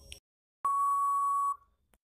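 Quiz countdown-timer sound effect: the end of a short tick, then one steady high electronic beep lasting about a second, the signal that the answer time is up.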